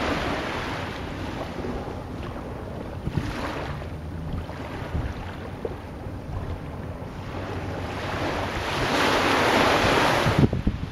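Seaside ambience of waves washing in with wind: a steady rush that swells a few times, loudest near the end, with occasional low knocks.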